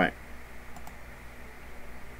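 Two faint clicks at a computer about three-quarters of a second in, over a low steady hum.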